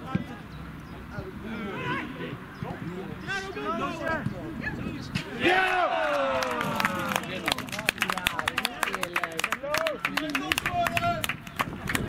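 Men's voices shouting across an outdoor football pitch, with one long falling shout about five and a half seconds in. After it comes a dense run of sharp clicks.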